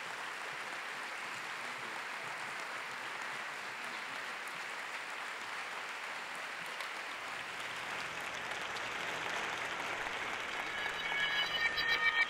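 Audience applauding steadily. Near the end, music with bright repeated notes starts over the clapping.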